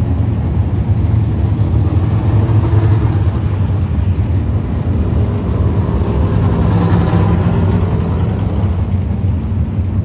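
Several dirt-track stock car engines running at speed around an oval, a steady rumble that grows somewhat louder and rises in pitch about six to eight seconds in as cars pass close by.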